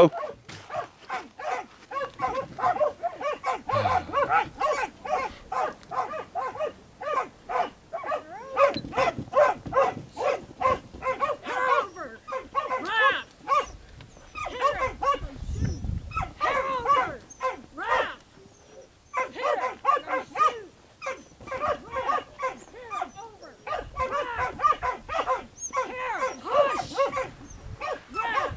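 A dog barking repeatedly, short barks coming several a second with a few brief pauses.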